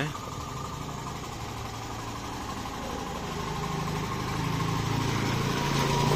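Hero Glamour Xtech's 125 cc single-cylinder engine idling with a steady low hum, gradually getting louder.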